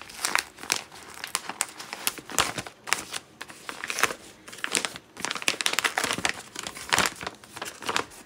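Wrapping paper crinkling and rustling in dense, irregular crackles as hands unfold a paper-wrapped parcel.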